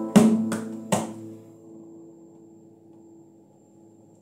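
Classical guitar playing the closing strums of a song, two sharp strums within the first second; the final chord then rings on and slowly dies away.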